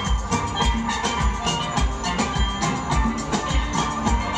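A steel orchestra playing live: many steelpans ringing together in a dense, lively texture over a steady low beat of about two thumps a second.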